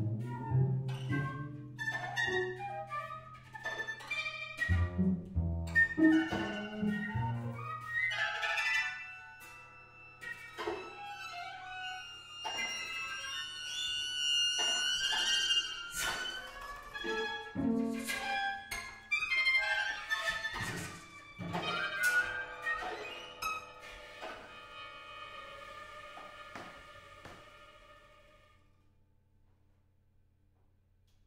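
Contemporary chamber music from a mixed ensemble of daegeum, sheng, koto, strings and percussion: scattered plucked and struck notes that ring on, over held wind and bowed tones. It thins out and dies away to near silence shortly before the end.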